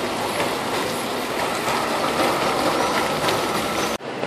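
Steady splashing of fountain water falling into its stone basin, mixed with city street traffic.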